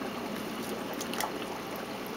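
Steady trickling and bubbling of water in a saltwater pond, with a couple of faint clicks about a second in.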